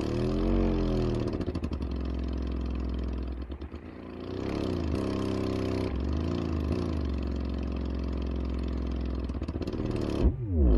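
Prototype Sundown LCS 10-inch subwoofer (poly cone, rubber surround, double-stacked motor) playing low bass tones at large cone excursion: a buzzy low hum whose pitch rises and falls a few times, briefly dipping in level a little before the middle.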